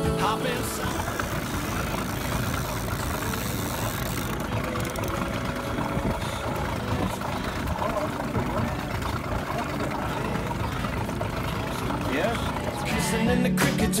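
Small outboard motor running steadily at low trolling speed, under a steady rush of wind and water.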